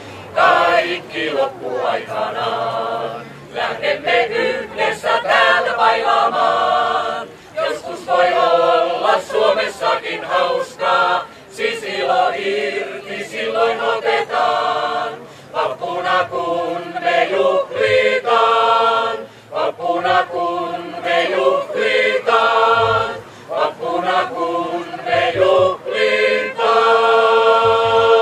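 Mixed choir of men and women singing a song without accompaniment, in phrases broken by brief pauses every few seconds.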